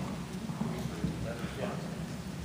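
Indistinct, low speech in a large auditorium over a steady low hum, with a few faint light knocks.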